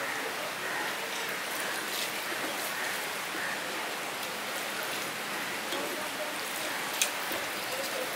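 Rice and dal being mixed by hand on a steel plate: soft, wet squishing over a steady hiss, with a single sharp click about seven seconds in.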